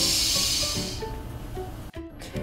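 A woman's voice making a long hissing 'shh' sound, the sound of the letter X in Portuguese, fading out after about a second. Soft background music plays under it.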